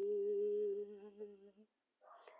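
A woman's voice humming one low, steady note as light-language vocalising, softer than her singing and trailing off about a second and a half in.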